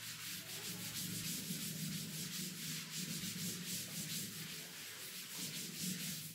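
Blackboard duster wiping chalk off a chalkboard in quick back-and-forth strokes, a continuous scrubbing rub.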